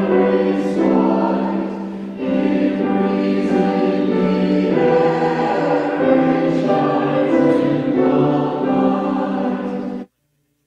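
Church choir of mixed men's and women's voices singing an anthem in parts, holding long chords that change every second or two.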